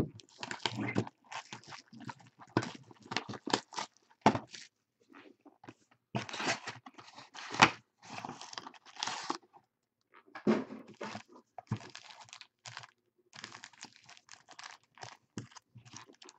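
Packaging of a trading-card box being torn open and crinkled by hand: irregular crackles and rips, with one sharp snap about seven and a half seconds in.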